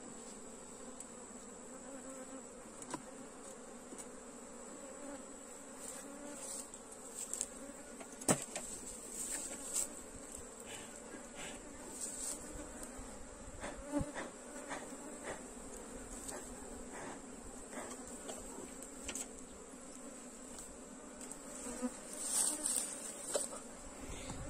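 Honeybee colony humming steadily in an open hive box under a glass cover. A few light knocks and clicks come in, the sharpest about 8 seconds in.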